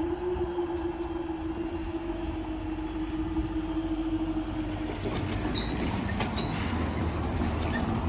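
Level crossing barriers rising, with a steady hum from the barrier drive that fades about five seconds in. After that comes a low rumble with scattered clicks and rattles.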